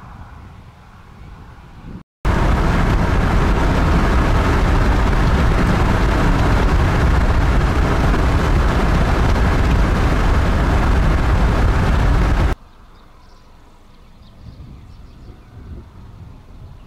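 Strong wind buffeting the microphone: a loud, steady rush with a heavy low rumble, starting abruptly after a brief dropout about two seconds in and cutting off suddenly about three seconds before the end. Fainter outdoor ambience lies on either side of it.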